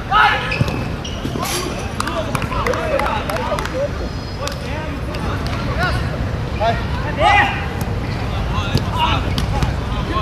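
Players shouting short calls across a small-sided football game, with the loudest shouts right at the start and about seven seconds in. The ball is kicked and bounces on the artificial turf over a steady background hum.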